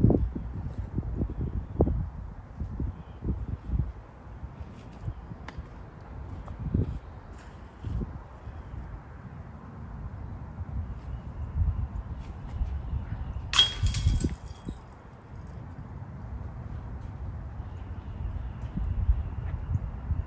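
Low wind rumble on the microphone, then about two-thirds of the way through a single sharp metallic clash with a brief ringing tail: a putted disc striking a metal disc golf basket dead center.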